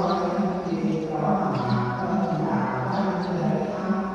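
Buddhist chanting: voices in a slow, drawn-out chant with long held notes, carrying on without a break.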